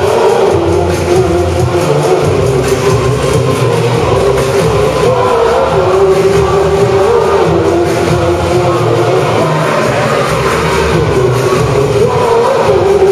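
Rock band playing live, loud and steady: electric guitar and band with a singer's voice over the top.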